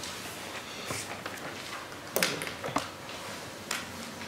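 Quiet hall ambience with a steady hiss and a few scattered sharp clicks and knocks, the loudest about halfway through, as people shift in their seats and handle things during a silent show-of-hands vote.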